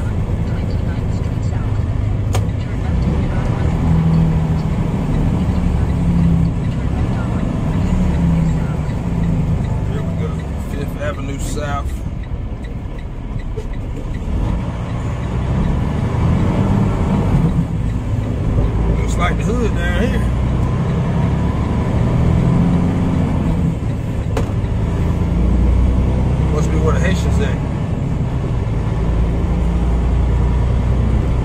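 Semi truck's diesel engine droning low in the cab while driving, easing off about twelve seconds in and building again afterwards. A few brief voice fragments are heard over it.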